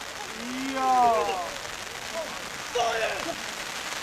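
Steady hiss of rain, with two shouts from players on the pitch: a loud, long falling call about a second in and a shorter one near three seconds in.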